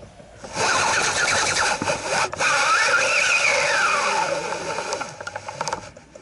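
Fishing reel being cranked right beside the rod-mounted camera, its gears whirring with a pitch that rises and falls as the winding speed changes. The winding starts about half a second in, breaks off briefly about two seconds in, and eases off near the end.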